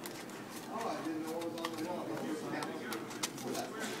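Faint clicking and rustling of thin plastic puzzle-lamp pieces being flexed and hooked together by hand, with a faint low hum underneath around the middle.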